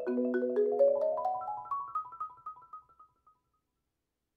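Marimba played with four yarn mallets: a run of single notes stepping upward in pitch and growing steadily quieter, dying away to silence about three seconds in.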